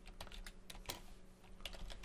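Typing on a computer keyboard: a run of faint, irregular key clicks.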